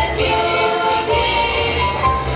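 School choir singing a Christmas carol through microphones, backed by instruments with a continuous bass line and steady percussion strokes.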